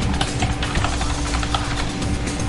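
Computer keyboard being typed on: a run of irregular keystroke clicks, several a second, over a steady low hum.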